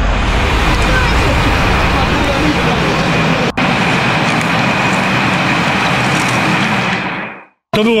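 Steady, loud rumble and hiss of a coach bus's engine and road noise, with a brief break about three and a half seconds in. It stops shortly before the end.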